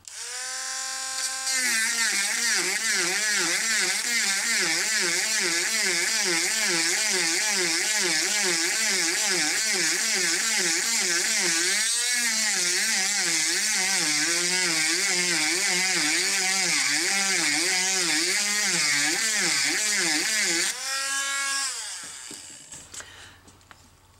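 Small handheld rotary tool with a cutting bit grinding the grease hole of a steel kingpin bushing, elongating it into a slot. The motor's whine wavers up and down about twice a second as the bit bites. It cuts off about three seconds before the end and winds down.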